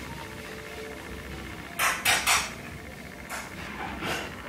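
Short noisy sips of hot tea from a porcelain teacup: a quick run of three or four about two seconds in, and one more a second later.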